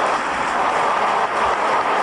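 A large hall full of parliament deputies applauding: steady, dense clapping.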